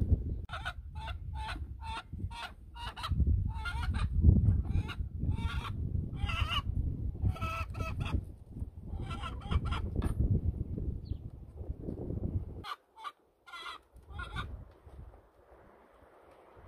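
Chickens clucking over and over, about two short clucks a second, over a low wind rumble on the microphone that drops out about three-quarters of the way through.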